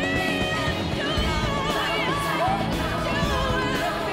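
Live rock band music at full volume: drums and band with a woman's wavering sung melody over it.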